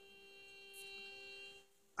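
Near silence with a faint steady hum of a few held tones.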